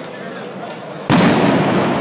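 Crowd of football supporters making a steady din, then about a second in a loud firecracker bang goes off, and the crowd stays loud after it.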